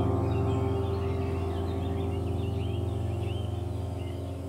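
Soft ambient background music: a held chord slowly fading, with bird chirps over it.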